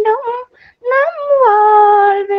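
A female singer singing a Tamil song unaccompanied. A phrase breaks off about half a second in, then after a short pause a note rises, falls and is held steady.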